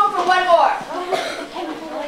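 A high-pitched voice calls out briefly, then a cough comes a little over a second in.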